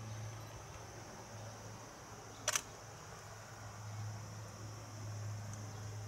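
Steady trackside background of high-pitched insect chirring over a low hum, broken once about halfway through by a short, sharp click.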